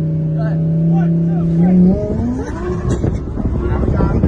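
Twin-turbo Lamborghini Huracán's engine in a roll race, droning at a steady pitch and then rising as the cars accelerate hard. The drone gives way to loud wind and road rush past the open car window.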